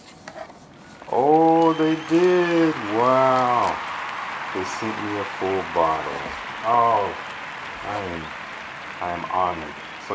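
Plastic air-pillow packing crinkling and rustling as it is handled in a cardboard box, while a man hums a tune without words from about a second in.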